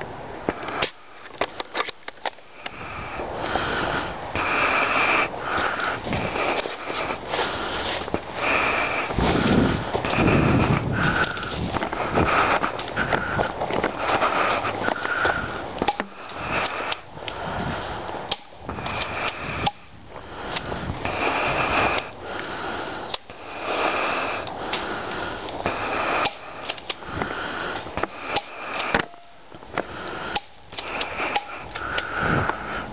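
Close rustling and handling noise right at the microphone as it rubs against a jacket sleeve and gear, with many sharp clicks and knocks scattered through it.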